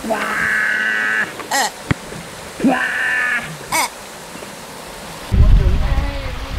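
Held vocal cries, two of them about two seconds apart, each followed by a short squeaky chirping call, with a sharp click between them. Near the end a loud low rumble starts suddenly.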